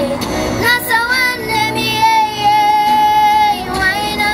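A child's singing voice over backing music, a slow melody with one long held note through the middle.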